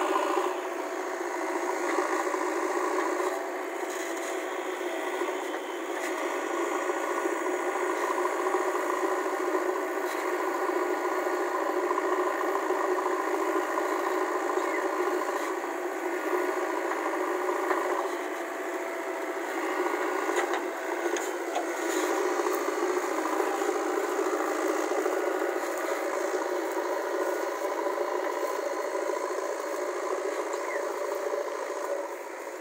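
JCB 3DX backhoe loader's diesel engine running steadily under load as the machine drives and works its backhoe arm, with occasional short rattles and clanks from the arm and bucket.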